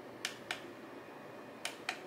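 Two pairs of short sharp clicks from the push buttons on a battery-powered rotating display turntable, pressed to change its speed, the second pair about a second and a half after the first.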